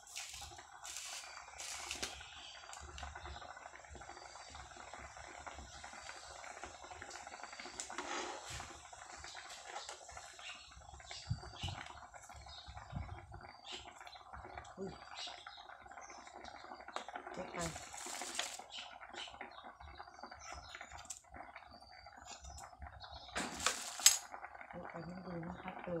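A metal spoon and ladle clink and scrape against a metal cooking pot as a simmering curry is seasoned and stirred, with a sharp knock on the pot near the end. Faint voices and a steady hum run underneath.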